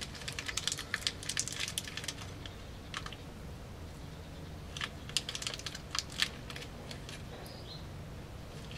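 Irregular light clicks and taps in quick clusters, thinning out after about two seconds and returning around five to six seconds in.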